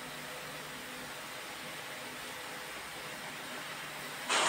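Faint, steady hiss of background noise with no distinct event. It begins and ends abruptly on either side, like a gap in the recording.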